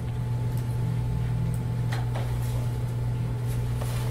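A steady low electrical hum with a few faint, brief clicks over it.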